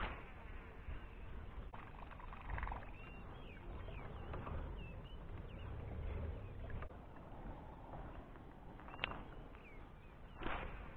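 A fishing reel's soft whirr as the line is wound in on a retrieve, with a couple of light clicks and a few short high chirps.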